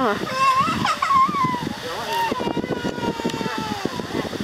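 Voices speaking, with one long drawn-out vocal sound in the second half, over soft knocks and handling noise.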